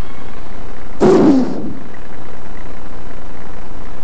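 A loud shout through a microphone and PA, once about a second in, lasting about half a second and falling in pitch, followed by a steady murmur of room and crowd noise.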